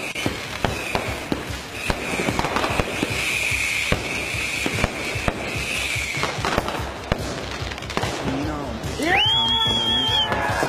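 New Year's Eve fireworks going off close by: a dense run of sharp firecracker bangs and crackling bursts, with a high steady hiss from about two to six and a half seconds in. About nine seconds in, a pitched sound rises and holds over them.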